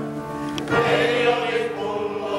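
A small group of men singing a Finnish folk song together, holding long notes. A short click sounds about half a second in.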